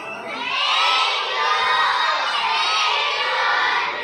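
A large group of children shouting and cheering together, swelling about half a second in and staying loud.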